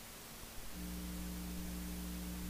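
Electrical mains hum with steady hiss on the recording. The hum is cut out at first and comes back with a small click under a second in.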